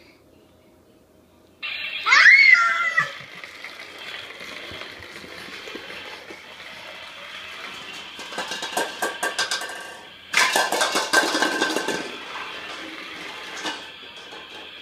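A battery-powered toy ATV switched on: its electronic sound effect starts suddenly with a rising rev, loudest about two seconds in. Its motor and sound chip then run steadily as it rolls along, with two louder, rattly stretches in the second half.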